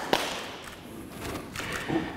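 A single thud just after the start as a body lands on the wooden sports-hall floor at the end of a takedown. Then only a faint low rumble of the hall.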